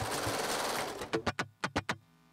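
Serger (overlock machine) stitching along a fabric edge at speed, a dense rattle that breaks about a second in into separate stitch strokes as the machine slows.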